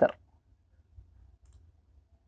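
A single faint computer mouse click about a second in, opening a web page menu, over a low steady hum.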